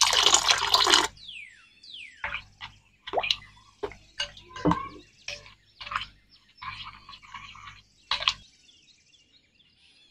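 Water poured in a stream into a glass bowl of semolina and curd batter for about a second, then a spoon stirring the wet batter, with irregular clicks and wet slaps against the glass that stop near the end.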